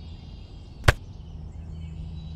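A single sharp click about a second in, over a steady low hum and faint high tones.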